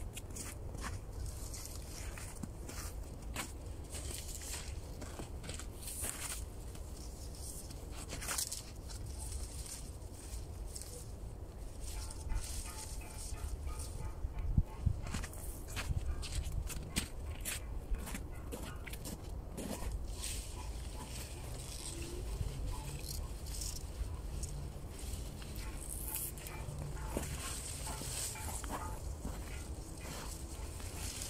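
Footsteps crunching on snow and dry cut reed stalks rustling and rattling as armfuls of reeds are carried and laid against a shelter frame, over a steady low rumble of wind on the microphone.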